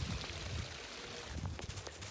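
Brook water running steadily, an even rushing sound with low uneven rumbles underneath.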